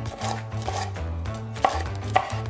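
Chef's knife slicing a yellow bell pepper into long strips on a plastic cutting board, the blade knocking on the board with each cut. The loudest knock comes about one and a half seconds in.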